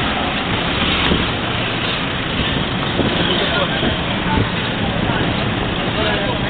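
Steady background din of a busy public place: indistinct voices mixed with traffic noise.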